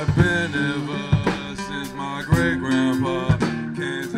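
Live band music: an acoustic guitar playing over drums that hit about once a second in a slow beat.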